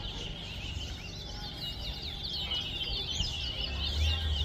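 Twa-twa (chestnut-bellied seed finch) singing a fast, continuous twittering song of high chirps, the run of notes thinning a little mid-way and picking up again toward the end.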